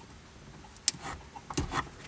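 Handling noise behind a truck's dashboard as a wiring plug is worked free: a sharp plastic click just under a second in, then a heavier knock and a few small ticks.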